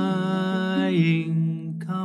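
A man singing one long, held note over a strummed ukulele. The note ends shortly before the end, and a fresh strum comes in.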